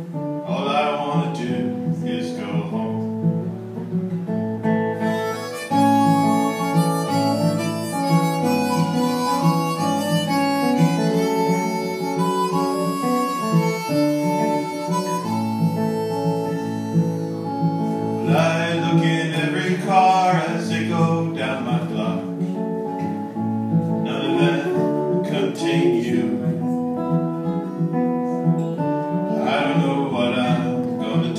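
Fingerpicked acoustic guitar accompanied by a harmonica. The harmonica takes a prominent solo over the guitar for roughly the middle third.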